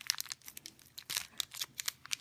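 Butterfinger candy bar wrapper being peeled and torn open by hand, crinkling in quick irregular crackles, with a quieter pause near the middle.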